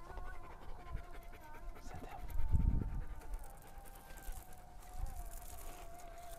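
A large dog-like canine panting close to the microphone, with a faint wavering tone underneath. A single low thump about two and a half seconds in is the loudest sound.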